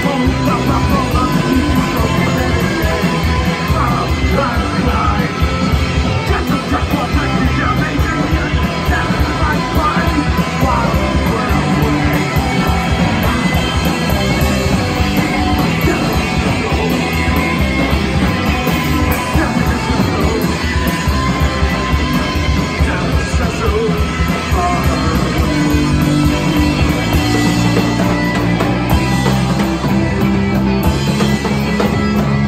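Live punk rock band playing loudly: electric guitars through Marshall amps and a drum kit, with fast, driving drums throughout.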